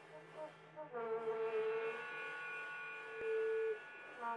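A band playing slow, droning music: a few short melody notes, then from about a second in one long steady note held for nearly three seconds over a low sustained drone. A single light click sounds about three seconds in.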